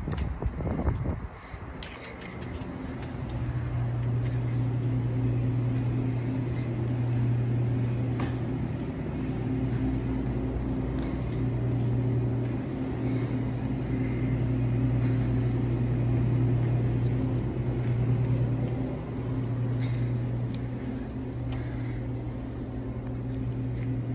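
A steady low mechanical hum, dipping briefly a few times, with light handling and rustling noise near the start.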